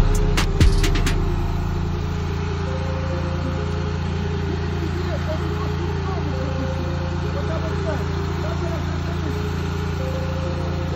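Fire engine's motor running steadily at a constant speed, driving the pump that feeds the hose, with faint voices of people at the scene. Two heavy drum thumps from background music sound in the first second.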